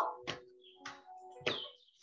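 Background music with steady held tones and a regular sharp beat, about one strike every 0.6 seconds.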